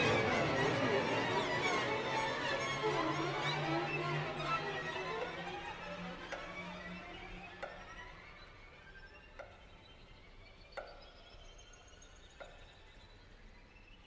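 Zheng and string orchestra playing a dense passage that dies away over the first half. After that, single plucked notes ring out sparsely, about one every second and a half, over a faint high rising glide.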